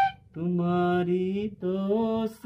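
A man's low voice singing the melody in two long held notes, the first stepping slightly up in pitch. The tail of a bamboo flute (bansuri) note ends just at the start.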